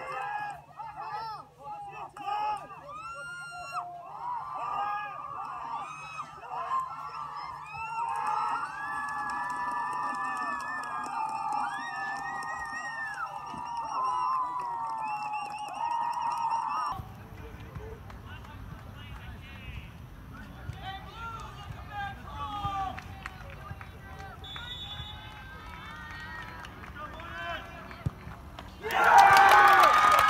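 Sideline spectators at a soccer match talking and calling out over one another. After a cut partway through, the voices thin out over a low steady rumble, and about a second before the end the crowd bursts into loud shouting and cheering.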